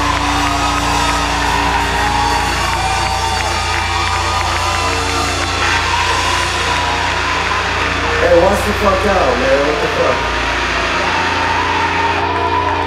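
Live rock band's sustained electronic drone: held synth-like tones over a steady low hum, with a wavering voice-like sound about eight seconds in.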